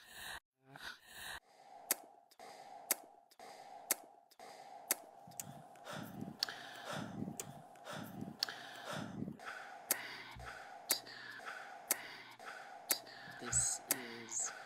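Opening of a sound-art recording played through a video call: short breathy sounds, then a steady hum with a sharp tick about once a second and soft low swells.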